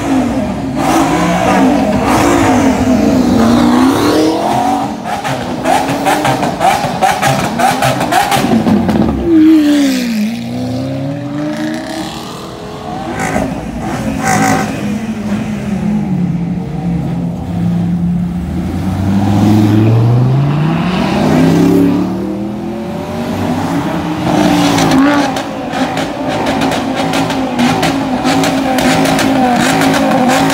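High-performance car engines revving and running at low speed as cars roll past one by one, their pitch repeatedly climbing and dropping with throttle blips.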